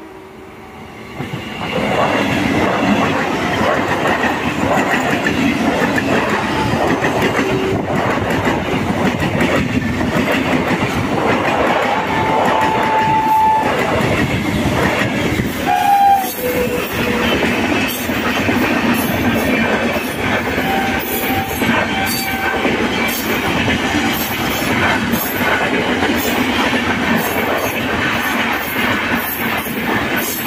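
An EMU local train and an express train passing close by at speed: a loud, steady rumble and clatter of steel wheels on rail that starts about a second in. In the second half there is repeated clacking over the rail joints. A held horn note sounds near the middle, and a short one follows a few seconds later.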